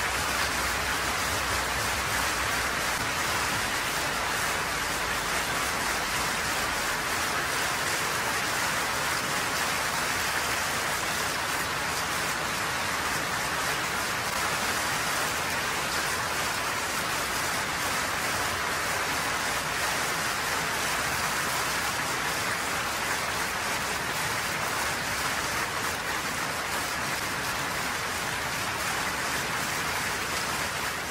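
Sustained audience applause: many hands clapping in a steady, even clatter at a constant level, with no music.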